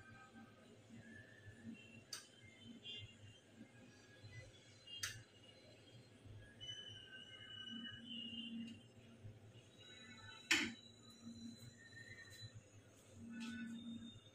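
Faint background music with a few sharp clinks of a metal spoon against cookware and glass, three in all, the loudest about ten and a half seconds in.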